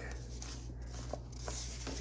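Paper sticker sheets being handled and flipped, a faint rustle with a few light taps, over a steady low hum.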